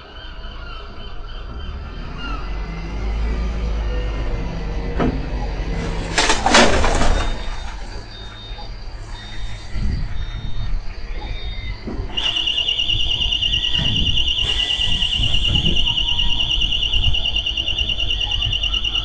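Refuse lorry's diesel engine rumbling while it manoeuvres, with a loud squeal about six seconds in. Short high reversing beeps follow from about eight seconds, then a continuous high-pitched alarm tone from about twelve seconds in, all picked up by a security camera's microphone.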